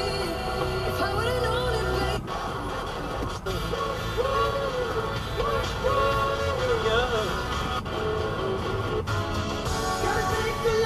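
Music with a singing voice, playing on a car radio inside the cabin.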